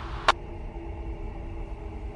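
Police two-way radio recording between transmissions: a steady hiss cut off above the upper voice range, over a low hum and rumble, with a single sharp click shortly after the start.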